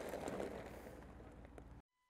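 Faint outdoor background noise that fades away, cutting to dead silence just before the end.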